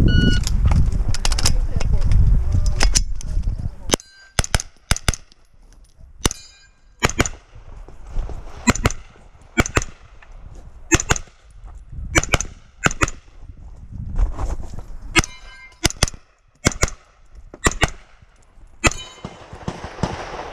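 Carbine gunfire during a USPSA stage: many sharp shots, mostly in quick pairs (double taps), spaced through the run with short gaps between strings. A loud low rumble fills the first few seconds, under the first shots.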